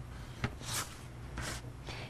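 Chalk drawn across paper in two short scratchy strokes about a second apart, with a light tap just before the first.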